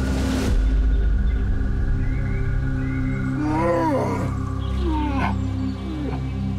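Background music of sustained drones, with a deep swell just after the start. Over it, two short wavering cries, rising then falling in pitch, come about three and a half and five seconds in; they are most likely a bear cub crying.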